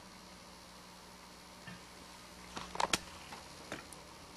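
Quiet low hum from an idle electric guitar and amplifier, broken by a few small clicks and ticks about two and a half to three seconds in and once more near the end, as the hands shift on the strings.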